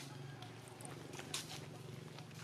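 Macaques moving about on dry leaf litter: scattered short crackles and clicks, the sharpest about a second and a half in, over a low steady hum.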